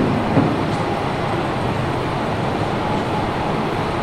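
Steady, even background noise, rumbling and without speech, filling the room's sound.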